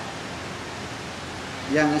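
A steady, even hiss of room and recording noise during a pause in a man's talk, with his voice coming back in near the end.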